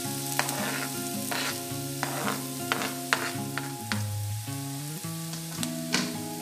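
Crumbled bread frying in hot oil in a kadhai, sizzling as it is stirred, with a spatula clicking and scraping against the metal pan several times. Background music with held notes plays underneath.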